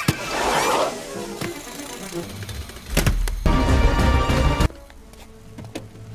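Animated-film soundtrack with music and baggage-conveyor machinery sound effects. A sharp hit comes about three seconds in, then a loud low rumbling passage that cuts off suddenly a little before five seconds.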